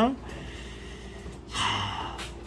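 A man's short, audible breath, a noisy intake about one and a half seconds in, over a faint steady room hum.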